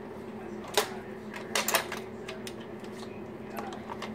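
A few sharp plastic clicks and knocks from a Nerf blaster being handled: one about a second in, a quick cluster shortly after, then fainter ones, over a steady low hum.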